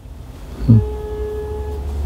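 A steady, flat-pitched tone lasting about a second, starting just under a second in, over a low steady hum.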